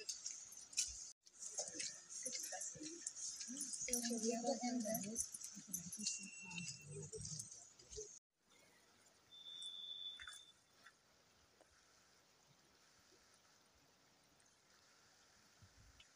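Faint, steady rushing of river water below a footbridge, with soft voices of people nearby. After a cut about eight seconds in it drops away, a short high chirp sounds, and the last few seconds are near silence.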